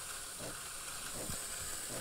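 Breville Barista Touch's steam wand frothing milk in a stainless pitcher under automatic milk texturing: a steady hiss of steam as the milk is heated and foamed.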